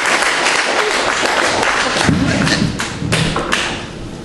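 Audience applause, many sharp claps in a dense patter, dying away near the end, with a heavier low bump about two seconds in.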